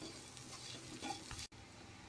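Faint stirring and scraping of a spiced chopped-vegetable filling in a nonstick pan, with a low sizzle of frying underneath. The sound cuts out for an instant about three-quarters of the way through.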